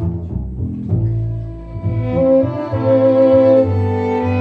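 Live string ensemble with violins playing an instrumental passage: a low bowed line first, then the violins come in with higher held notes about two seconds in and the music grows louder.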